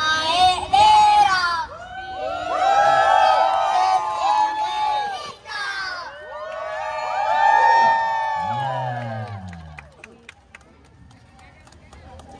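A group of young children shouting together in unison, a team cheer, in three loud bursts over about eight seconds. A lower voice follows with a falling pitch, and it goes quieter near the end.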